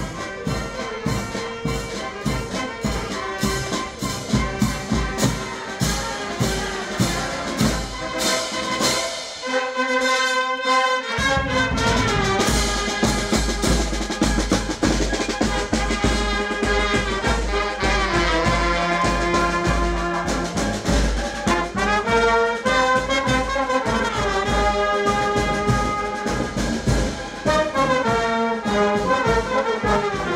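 Marching band playing in the street: clarinets, saxophones and trumpets carry the tune over bass drum and snare drum. The low end drops out briefly about ten seconds in, then the full band returns.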